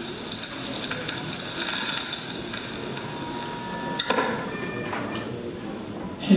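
A steady hissing, crackling noise over the stage loudspeakers, cut off by a sharp click about four seconds in, after which a fainter hiss remains.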